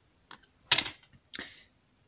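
A few short clicks and knocks of small hand tools handled on a hobby desk as a needle file is picked up. The loudest comes just under a second in, and a softer one follows about half a second later.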